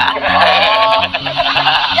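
A person laughing in a drawn-out, high, arching laugh over background music with steady low notes.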